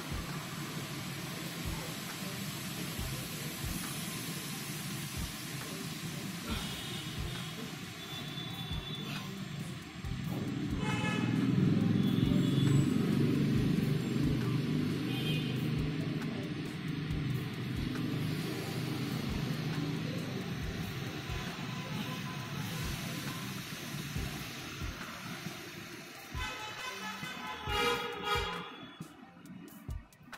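Street traffic rumbling, swelling as a vehicle passes about ten seconds in and easing off over the next several seconds, with several short car-horn toots, the last burst near the end.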